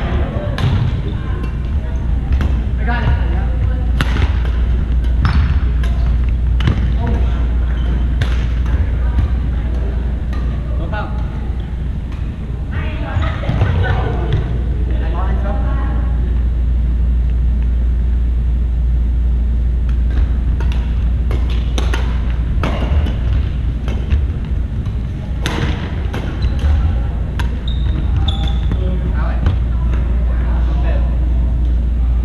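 Badminton rackets striking shuttlecocks during rallies, sharp hits at irregular intervals that echo in a large gym. Players' voices come and go over a steady low hum.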